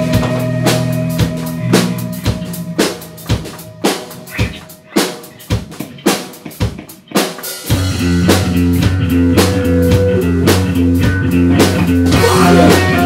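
A live rock band on a Pearl drum kit, bass and electric guitar. The held notes die away over the first three seconds, leaving the drums playing alone with sparse, spaced hits. The full band comes back in loudly just before eight seconds, with a chugging riff.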